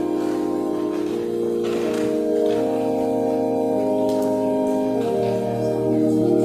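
Organ playing slow, sustained chords that change every second or so.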